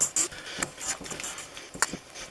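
A metal fork scraping and clinking against a stainless steel mixing bowl while stirring a thick oat and mashed-banana mixture, with a sharper clink near the end.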